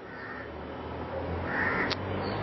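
Two short, harsh bird calls, one at the start and one about a second and a half in, over a low steady hum that grows louder; a sharp click near the end.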